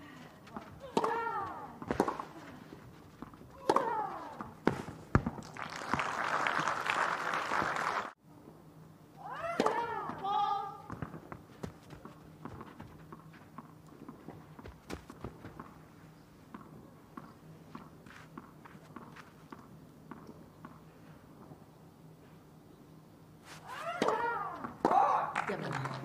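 Tennis rally on a clay court: racket-on-ball strikes with players' grunts on their shots, then spectators applauding for about two seconds after the point. Voices follow, then a quieter stretch of scattered ball bounces and taps before the next serve, with voices rising again near the end.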